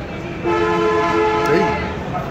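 A loud, horn-like blast of two steady pitches sounding together. It starts about half a second in and holds for over a second, with a brief wobble in pitch near the end.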